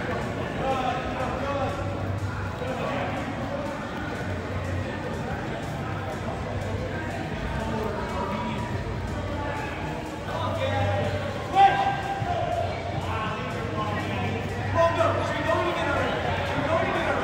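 Soccer balls being dribbled and kicked on indoor artificial turf, with indistinct voices and a steady low hum in an echoing hall. A sharp ball strike stands out about eleven and a half seconds in, and smaller strikes come near fifteen seconds.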